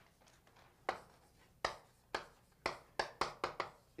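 Chalk writing on a blackboard: a string of short, sharp taps and scratches as letters are written, a few widely spaced at first, then quicker strokes in the second half.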